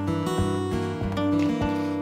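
Acoustic guitar playing in a short instrumental gap between sung lines of a blues song, with a sustained low note under regular low plucked bass notes.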